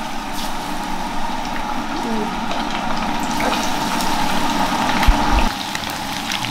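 Marinated chicken pieces frying in hot oil in a pan: a steady sizzle with fine crackling. A brief low bump comes just after five seconds in.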